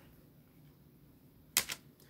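Plastic CD jewel case being handled, giving a sharp double click about a second and a half in as the case snaps.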